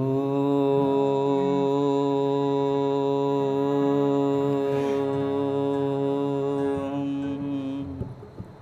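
A male voice slides up into a single note and holds it, chant-like, for nearly eight seconds over a sustained harmonium, as in a Hindi devotional bhajan. The note breaks off just before the end.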